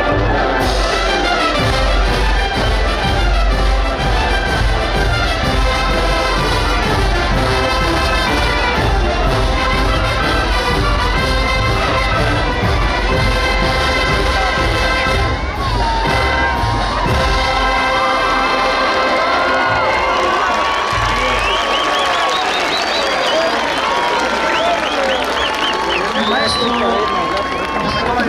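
Oaxacan brass band playing a lively dance tune, trumpets and trombones over a steady low beat. About two-thirds of the way through the beat stops, a long note is held, and the crowd cheers and shouts.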